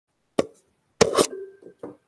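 Handling noises as a marker and board are set up: a sharp click, then a louder knock with a brief rustle about a second in, followed by two small knocks.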